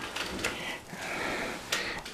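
Handling noise as a camera or phone is picked up and swung around: rustling and scraping with a few sharp clicks, the loudest click near the end.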